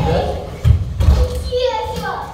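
Two heavy thuds of boxing-gloved punches, a little over half a second and about a second in, then a child's short voice near the end.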